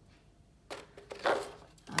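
A paper greeting card being picked up and handled, with two brief rustles about two-thirds of a second and a second and a quarter in, the second louder.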